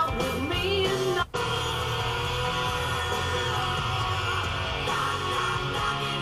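A song with singing and guitar playing on the car radio, cutting out for a split second about a second in.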